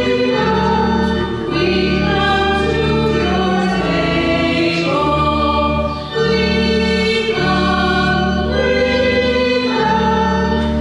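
Choir singing a slow hymn in long held chords, with short breaks between phrases about a second in and again around six seconds.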